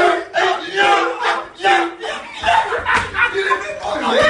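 Several young men's voices shouting and chanting excitedly over one another, loud and continuous, with held, sung-out notes.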